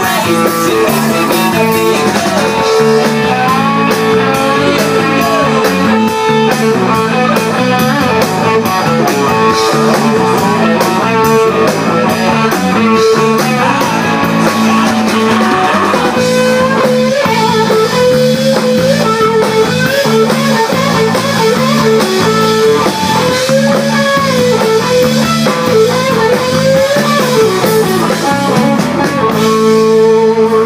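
Live rock band playing an instrumental passage: electric guitars and drum kit, with a held droning chord under a wavering, bending lead line.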